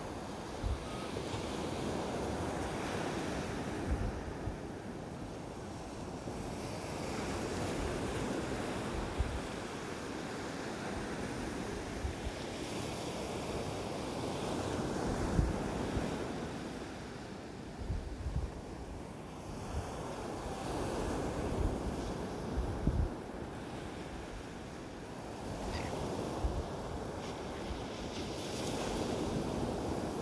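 Ocean surf breaking on a beach, the wash swelling and easing every several seconds, with wind buffeting the microphone in low thumps.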